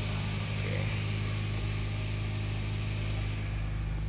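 Range Rover Velar's 2.0-litre four-cylinder engine idling in Park, a steady low hum heard from inside the cabin.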